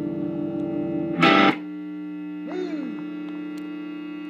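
Electric guitar played through a Peavey Classic 20 tube amp, distorted: a chord rings and fades, a short loud burst comes about a second in, then a steady held tone with a note gliding down in pitch about two and a half seconds in.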